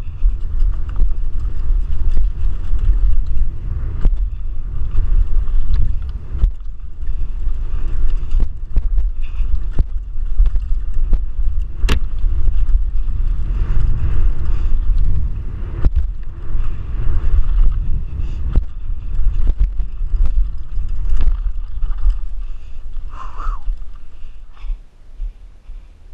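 Mountain bike ridden fast down a dry dirt trail, heard through a GoPro: steady wind rumble on the microphone and tyre noise, with frequent knocks and rattles from the bike over bumps. The noise drops off near the end as the bike slows.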